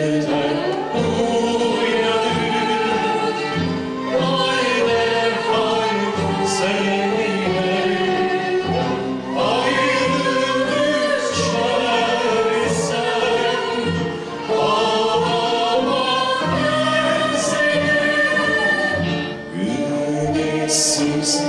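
Live Turkish Sufi (tasavvuf) music: a male lead voice and a small female chorus singing a slow, ornamented melody, accompanied by an ensemble including kanun and long-necked saz.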